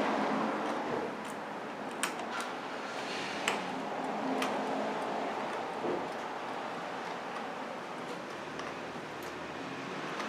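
A wrench tightening a car battery's positive terminal clamp: a handful of light metallic clicks at irregular intervals over steady background noise.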